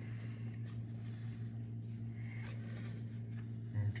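Faint wet squishing and dripping of a chicken breast being turned in a bowl of buttermilk and hot-sauce batter, a few soft scattered sounds over a steady low hum.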